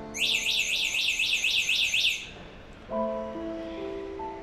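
Soft background music with sustained keyboard notes. For about the first two seconds a high, fast warbling chirp, repeating about five times a second, is the loudest sound. New notes of the music come in near the end.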